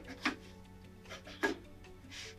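Quiet background music with two short knocks from handling the aluminium stop and bar of a mount cutter, one just after the start and one about a second and a half in.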